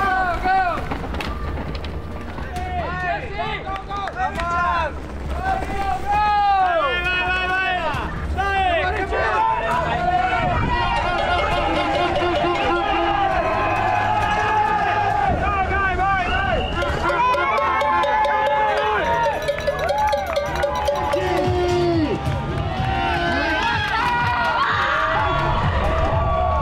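Spectators shouting and cheering riders on, many overlapping rising-and-falling yells, over background music.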